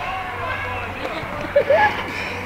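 Boys' voices shouting and calling out, with a louder call near the end, over a steady low hum.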